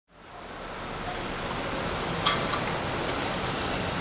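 Steady outdoor street noise, a rushing traffic hiss, fading in over the first second. There is one sharp click a little over two seconds in.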